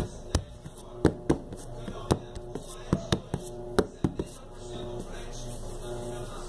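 Hands handling a soft mixture close to the microphone: a string of irregular sharp taps and clicks through the first four seconds, then quieter.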